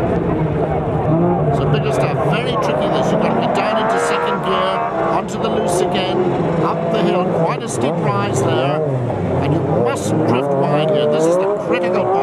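Rallycross supercar engine heard from inside the cockpit, working hard, its pitch rising and falling over and over through gear changes and lifts, with frequent sharp cracks and clicks on top.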